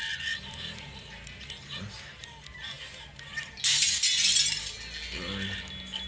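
Cartoon sound effect of glass and crockery shattering: a sudden loud crash about three and a half seconds in that lasts about a second, over background music.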